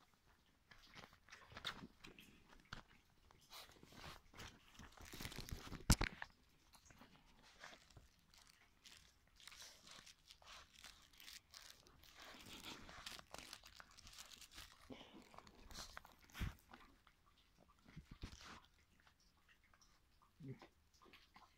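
Puppies nuzzling and mouthing at the phone and crawling over fabric bedding: faint, irregular crackles, rustles and contact noises, with one sharper knock about six seconds in.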